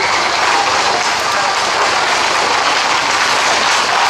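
Dense, steady clatter of many horses' hooves on the street mixed with crowd noise.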